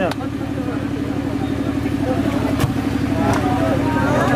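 An engine running steadily at idle, an even low pulsing drone, with two sharp clicks, one just after the start and one about two and a half seconds in.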